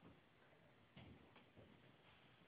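Near silence: faint room tone, with a few soft clicks about a second in.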